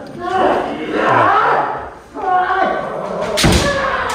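Kendo practice in a wooden-floored hall: voices ring through the room, and about three and a half seconds in comes one loud, sharp crack of a kendo attack, the stamping step on the wooden floor with the bamboo sword's strike.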